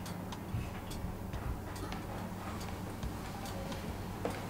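Light ticking, about two or three ticks a second, over a low steady drone.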